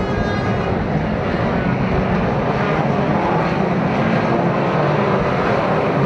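Engines of a pack of 2-litre banger racing cars running together on the track, a steady mixed drone, as the cars form up for the start.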